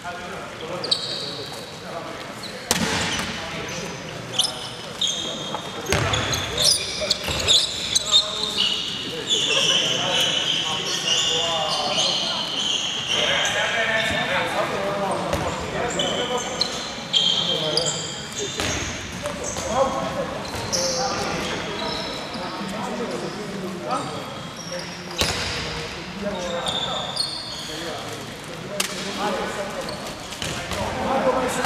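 A handball bouncing on a wooden sports-hall court, with repeated knocks, short high squeaks and players calling out during play.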